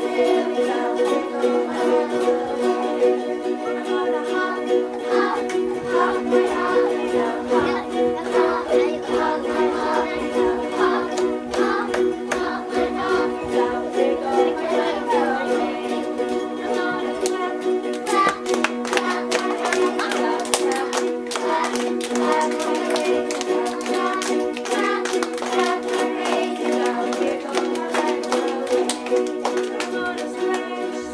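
A group of ukuleles strummed together in a steady rhythm, with voices singing a simple song along with them. The strumming turns sharper and more percussive for a few seconds past the middle.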